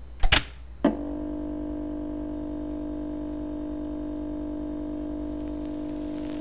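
Title-sequence sound effects: two sharp impact hits, then a steady held electronic drone with a hiss swelling in near the end.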